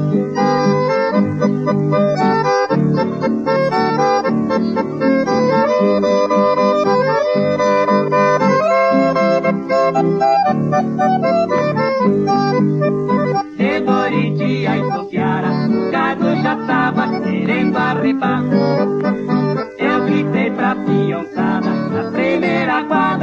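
Instrumental break in a sertanejo raiz song: an accordion plays the melody in held, stepping notes over a guitar accompaniment with a steady beat.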